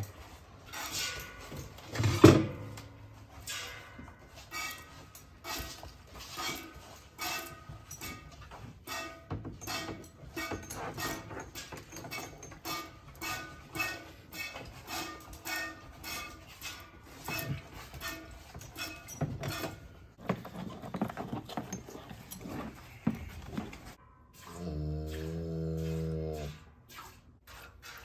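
Milk squirting from a Jersey cow's teat into a stainless steel pail during hand milking: a steady rhythm of about two squirts a second, each with a light metallic ring. Near the end a cow moos once, a low call of about two seconds.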